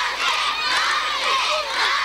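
Crowd of many high voices, largely children, shouting and cheering over one another in a continuous din.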